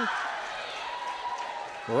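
Gymnasium crowd cheering and yelling as the home team wins the point, loud at first and dying away.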